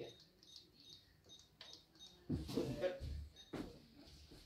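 Card payment terminal keypad beeping: a quick run of short, high beeps, about four a second, as a PIN is keyed in, followed by a brief stretch of voices and handling noise at the counter.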